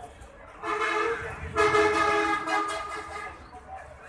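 A vehicle horn sounding twice: a short blast, then a louder, longer one of about a second and a half, each a steady held note.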